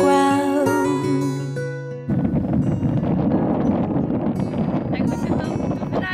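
A song with singing and acoustic guitar fades and stops about two seconds in, cut off abruptly by loud, steady wind buffeting the microphone.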